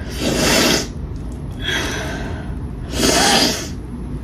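Three loud breathy huffs through a person's nose, each under a second long and about a second and a half apart.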